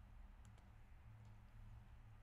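Near silence: room tone with a steady low hum and a few faint clicks of a computer mouse, the first and clearest about half a second in.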